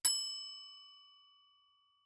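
A single bell-like chime, struck once and ringing out with a clear tone that fades away within about a second and a half. It is the signal marking the break between one passage of the listening test and the next.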